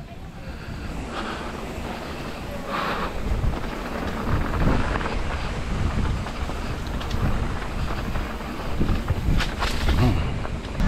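Wind buffeting the microphone of a camera riding on a mountain bike, mixed with the tyres rolling over a dirt and gravel trail. The noise is steady and rough, rising and falling with the terrain.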